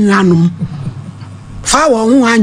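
Speech only: a voice draws out a long vowel, falling slightly in pitch, then after a pause of about a second talking starts again near the end.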